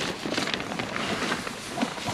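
Irregular rustling and handling noise as the handheld camera and clothing move about in a small nylon tent.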